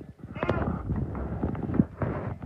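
Irregular run of taps and knocks as Barbie dolls are handled and knocked against a bench top.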